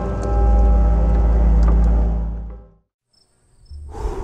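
Soundtrack music with a deep bass drone and held tones fades out about two-thirds of the way through. After a moment of silence, crickets begin chirping in steady high pulses over a low rumble of night ambience.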